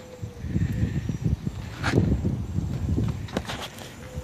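Footsteps on a wet wood-shingle roof: irregular low thuds, with a sharper knock about halfway through and a couple more near the end.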